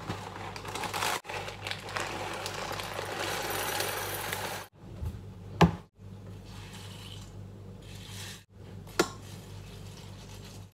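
Breakfast being made in a ceramic bowl: a few seconds of steady pouring rustle into the bowl, then a sharp knock around the middle and a lighter clink of a spoon against the bowl near the end, over a low steady hum.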